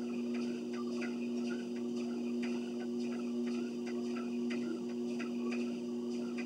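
Treadmill running under a walker: a steady motor hum with her footfalls on the belt as regular soft thuds, about two to three steps a second.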